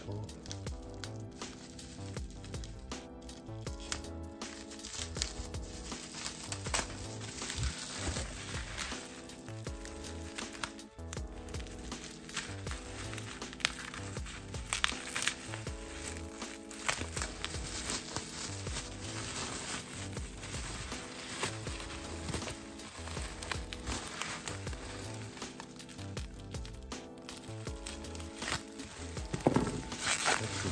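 Background music throughout, with bursts of plastic bubble wrap crinkling as it is cut with a small blade and pulled open.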